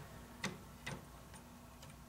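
Faint clicks and taps of a 3.5-inch hard drive being handled and fitted into a computer's drive bracket, the sharpest click about half a second in and another near one second, with a low steady hum underneath.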